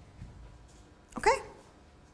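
Near silence: quiet room tone, broken about a second in by a single short spoken "okay?" with a rising pitch.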